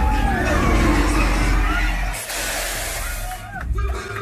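Loud car-chase soundtrack of a tram ride's projection-screen show: deep engine rumble, short pitched voices or squeals, and a loud noisy burst like a crash about two seconds in that cuts off near the end.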